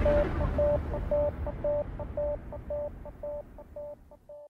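A short electronic beep tone repeating about two to three times a second over a low rumble: the tail of an outro jingle, fading out.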